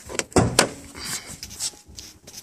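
Hood release lever of a 2012 Honda Civic Si pulled: a few sharp clicks and clunks within the first second as the hood latch pops.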